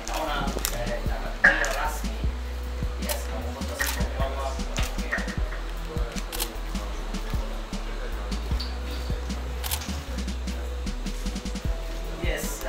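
Murmuring voices and faint music in a room, with many sharp camera-shutter clicks at irregular intervals during a posed photo.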